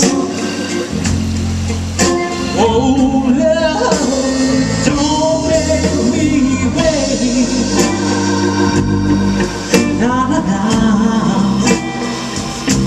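Live soul band playing an early-1960s-style R&B song: a sung vocal line over organ-toned keyboard, bass and drums, with sharp drum hits.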